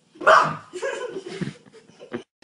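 A sudden loud cry about a quarter second in, followed by about a second of broken, noisy calls as a cat is startled.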